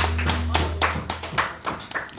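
Scattered clapping from a small audience, thinning out near the end, over a low sustained note from the amplified acoustic guitar that fades out about a second in.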